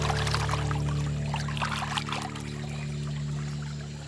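Water splashing and trickling as a hand works in an aquarium, crackly in the first half, over a held chord of background music that fades out near the end.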